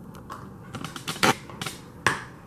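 Hard plastic parts of a Littlest Pet Shop playset clicking and knocking as a small bar piece is pressed and fitted onto it: several short, sharp clicks, the loudest a little past halfway.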